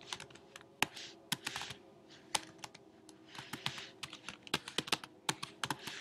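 Typing on a computer keyboard, a run of irregular keystroke clicks as a line of text is entered.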